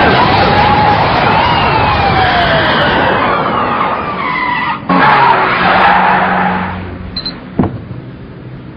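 Car-chase sound: tyres skidding and squealing in long wavering glides over loud traffic noise and sirens. About five seconds in it cuts abruptly to a fresh rush of noise with a low engine hum, which fades, and a single sharp knock comes shortly before the end.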